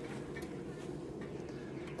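Pellet stove running with a steady low hum from its fans, the combustion exhaust fan set to low.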